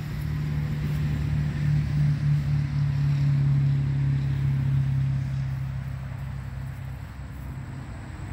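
2018 Polaris Ranger 900 XP's ProStar twin-cylinder engine idling steadily, a low even hum that swells a little a couple of seconds in and then eases.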